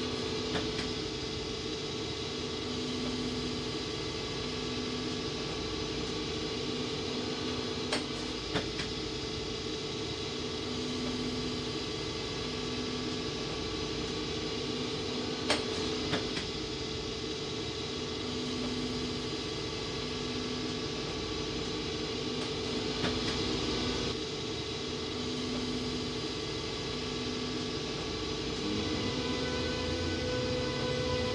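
Electric train running steadily: a constant rumble and hum with a tone that swells and fades every couple of seconds. Three times a pair of sharp clicks comes about half a second apart.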